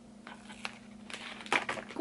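Quiet handling of a sheet of vinyl stickers: soft crinkling and a few light clicks as a small sticker is peeled off its backing.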